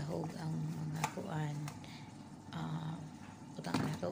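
A woman humming low, held notes without words, with a few sharp clinks of a metal potato masher against a glass bowl as boiled potatoes are mashed.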